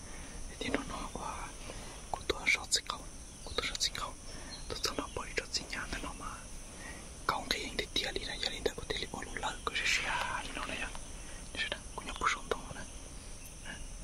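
A man whispering close to the microphone in a long run of hushed speech.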